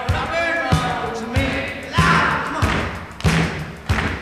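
Rock band playing live, with a man singing over electric guitars and a steady kick-drum beat about every two-thirds of a second.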